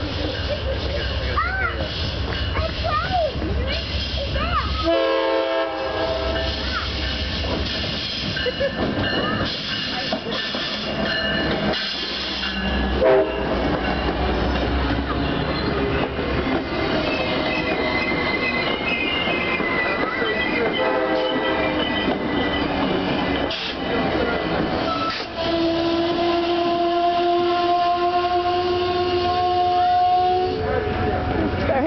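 Amtrak passenger train arriving and rolling past close by, with a steady rumble of engine and wheels. Its horn sounds three times: a long chord about five seconds in, a short one around thirteen seconds and another around twenty-one seconds. For the last few seconds a steady high squeal, typical of brakes or wheels, runs as the train slows.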